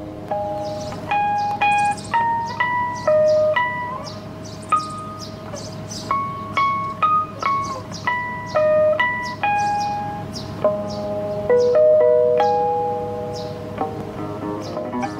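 Ten-string classical guitar played solo: a slow line of clear, bell-like single notes, one at a time, over a sustained lower note, with fuller chords coming back near the end.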